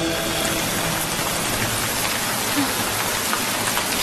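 Steady rain pouring down, an even hiss that holds without a break.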